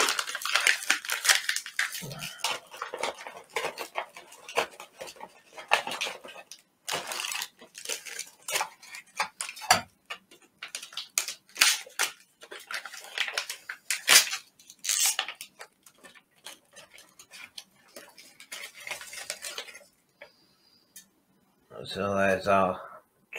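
Stiff plastic MRE ration pouches crinkling and rustling as they are handled and opened, with irregular clicks and clinks of items and a knife against a stainless steel compartment tray. The handling noise stops about two seconds before the end.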